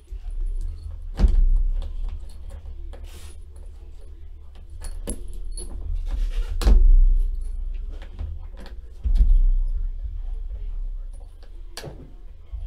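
Keys jangling and clicking against the metal latch of a locked hard case as it is handled, with several sharp clicks and knocks from the latches and case and a low rumble of the case shifting. The lock is stiff and hard to get open.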